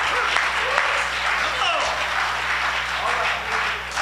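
Church congregation applauding steadily, with scattered voices calling out over the clapping.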